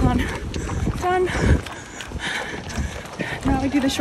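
Wind rumbling on the microphone of a camera held by a running person, with short bits of voice about a second in and again near the end.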